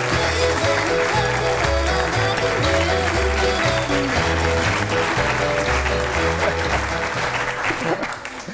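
Studio audience applauding over upbeat music with a bass line moving from note to note; the music cuts off near the end.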